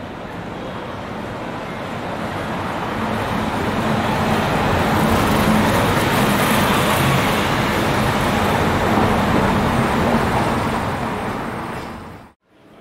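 A road vehicle driving past close by: its engine and tyre noise grow louder over the first few seconds, hold, then ease off near the end.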